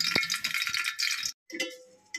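Hot ghee sizzling in an aluminium cooking pot: a dense, crackling hiss with a single knock near the start, cut off abruptly about a second and a half in.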